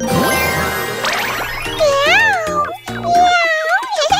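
A bright rising chime over bouncy backing music, then two drawn-out cartoon cat meows whose pitch wavers up and down.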